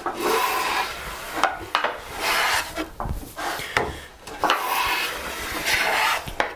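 Stanley No. 7 jointer plane taking three strokes along the edge of a cedar board, each a hiss of the iron shaving wood with light knocks between strokes. The edge is hollow, so the long sole rides the two high ends and the blade cuts only there, bringing the ends down toward the middle.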